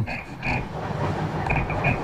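Train carriage running: a steady low rumble with several short, high-pitched chirps over it.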